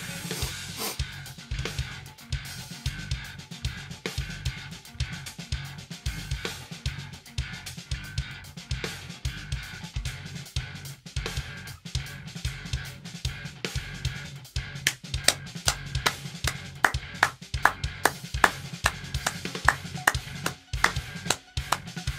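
Progressive metal drum playthrough: a fast, intricate drum kit part of kick drum, snare and cymbals in shifting odd groupings, played over the song's recorded band track. About two-thirds of the way through the hits grow louder and denser.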